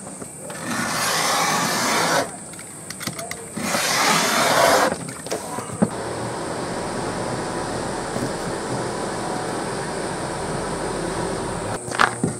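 Utility knife drawn through thick leather along a steel ruler: two long cutting strokes, each about a second and a half, in the first five seconds, followed by a lower, steady noise.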